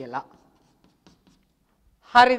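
Chalk writing on a blackboard: faint short scratches and taps as figures are written and underlined.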